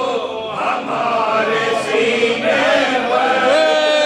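A group of men chanting a marsiya, the Urdu elegy for Husain, together in a slow melodic chant, the lead reciter's voice joined by his backing chorus. It ends on a long held note near the end.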